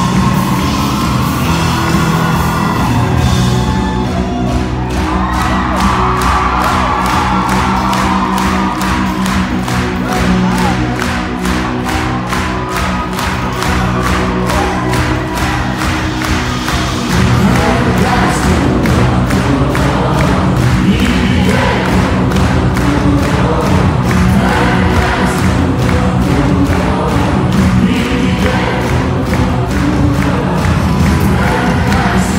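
Live pop-rock band: a male lead singer with electric guitar, bass and drums keeping a steady beat, recorded loud from the audience. The crowd is heard under the music, and the band gets fuller and louder about seventeen seconds in.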